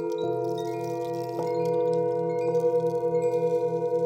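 Brass Tibetan singing bowls struck with a wooden mallet, three strikes about a second apart, each note ringing on over the others. The blended tones waver in a slow, steady pulse.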